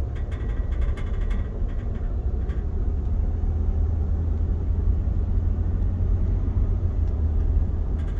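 Steady low rumble of road and engine noise inside a car's cabin while driving at moderate speed.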